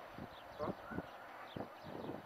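Faint outdoor ambience with distant voices and several short dull knocks, the loudest about halfway through.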